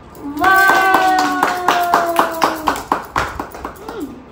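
Several people clapping in a steady rhythm, about four claps a second, with one long drawn-out voiced cheer sliding slowly down in pitch over the first two and a half seconds.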